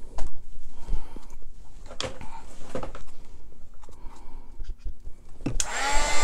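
A few soft handling knocks and rustles, then near the end a craft heat gun switches on and runs with a steady blowing noise and a faint whine.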